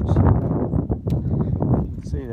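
Wind rumbling on the microphone, with irregular footsteps and rustling through dry grass.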